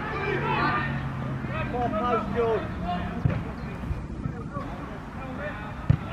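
Footballers shouting to each other on the pitch, then the sharp thud of a football being kicked about three seconds in and again, loudest, near the end.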